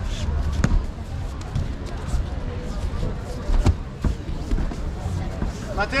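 Several sharp thuds and slaps of young judoka landing and falling on foam tatami mats during throwing practice, the loudest about three and a half seconds in.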